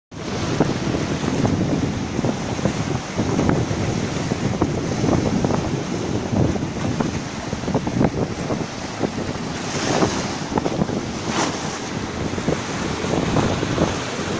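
Small sea waves breaking and washing up over a shallow sand-and-pebble shore, with a steady wash and a crackle of spray. Wind buffets the microphone throughout.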